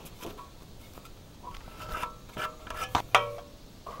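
Metal gas tank being handled, giving scattered knocks and clinks with short metallic rings, the loudest about three seconds in.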